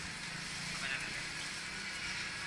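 Busy street-market background: a steady hum of traffic with indistinct voices nearby.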